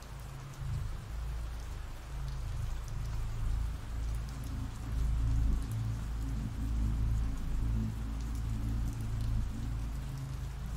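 Steady ambient rain falling, an even hiss of drops, with a low rumble underneath that swells slightly about halfway through.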